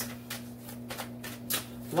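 A deck of tarot cards being shuffled by hand: a quick, irregular run of card flicks, several a second.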